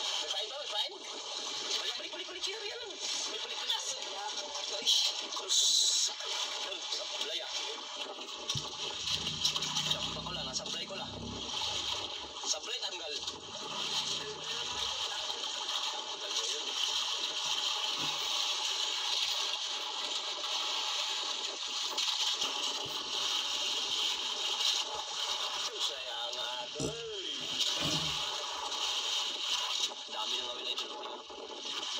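Indistinct voices over a steady rush of wind and sea noise on an open boat.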